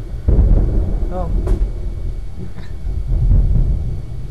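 Low, rumbling handling noise of paper and card being moved and pressed on a craft table, beginning with a thud about a quarter second in.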